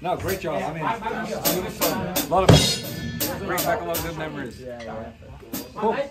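Drum kit being struck, with sharp cymbal and drum hits at uneven intervals, the strongest about two and a half seconds in, under several people's voices.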